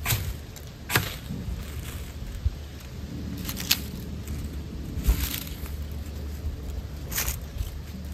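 Dry leaves crinkling and crackling as they are crumpled and handled, in a handful of short, separate rustles a second or more apart.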